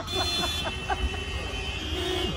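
A man laughing softly over the steady hum of street traffic.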